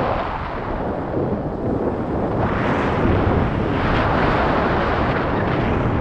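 Flight wind buffeting an action camera's microphone on a paraglider in flight: a loud, steady rushing that swells and eases in gusts.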